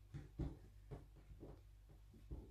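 Faint rustling and brushing of cotton wax-print fabric and soft foam wadding being smoothed flat by hand, a few short soft strokes about half a second apart over a low steady hum.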